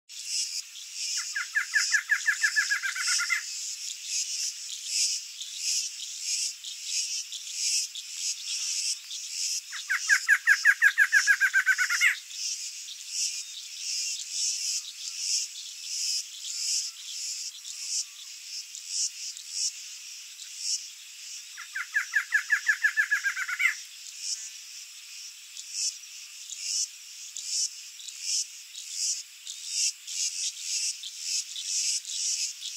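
Male barred antshrike singing three times, each song a rapid run of notes lasting about two seconds: his breeding-season territorial song. A steady, pulsing insect chorus runs underneath.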